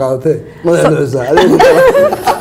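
Talk-show conversation with chuckling laughter in the second half.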